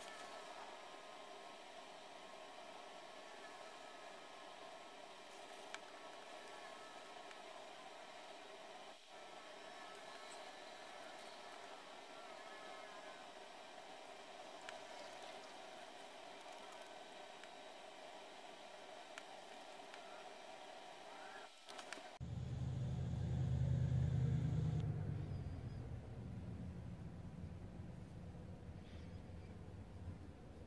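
Faint steady room hum with a few thin, even tones. About two-thirds of the way through it changes abruptly, and a low rumble swells for a couple of seconds and then fades.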